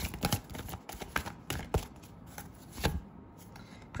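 A deck of oracle cards being shuffled and handled by hand: a handful of sharp, irregularly spaced card snaps and taps that stop about three seconds in.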